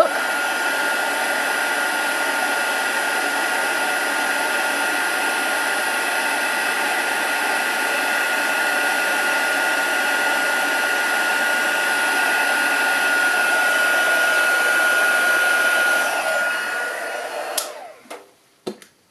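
Craft heat tool (embossing heat gun) running steadily, a rush of hot air with a steady high whine, melting clear embossing powder on stamped ink. It is switched off near the end and runs down.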